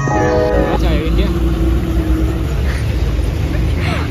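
Background music that ends about a second in, over a steady low rumble, with a brief held voice-like tone in the middle.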